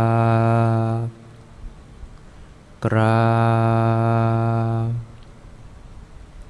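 A man's voice intones the Thai word 'kraap' (bow) as a long, level, drawn-out call, twice: one call ends about a second in, and another runs from about three to five seconds in. It is the cue for the congregation to prostrate together.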